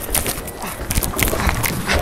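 A rapid, irregular run of sharp knocks and taps, like a ball and footsteps striking the wooden surface of a bowling lane.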